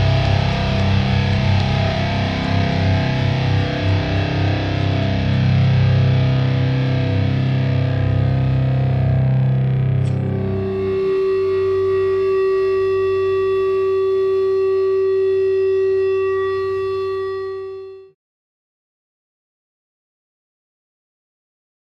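Live band playing with heavily distorted electric guitar, then about halfway through a single distorted guitar note is held and rings out steadily over a low drone. It fades away and stops short, ending the song.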